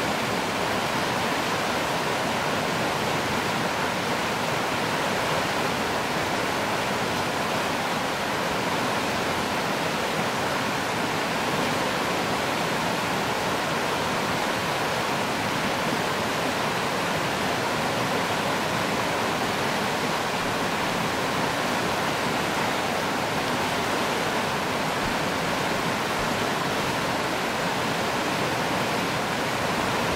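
Fast river water rushing over rapids: a steady, unbroken rush of whitewater.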